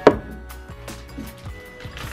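Background music plays throughout. Right at the start comes one sharp knock, a glass bottle being set down on the counter.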